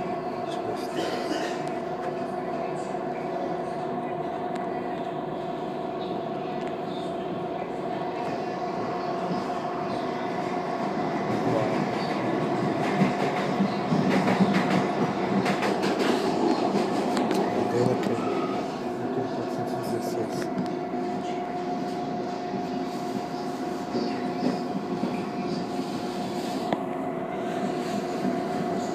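Inside a moving CPTM Série 2000 electric multiple unit: steady running noise of the train with a constant whine, and a louder stretch of wheel clicks and rattling on the rails for several seconds about halfway through.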